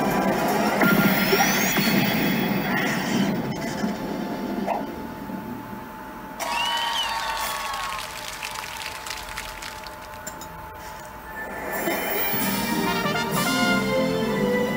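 A Pachislot Madoka Magica 2 slot machine playing its bonus-battle soundtrack and effects. Dense music and effects for the first few seconds, quieter in the middle, then the music swells again near the end as the win is shown.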